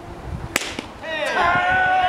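A pitched baseball striking at home plate: one sharp crack about half a second in. From about a second in, several players shout a long held call.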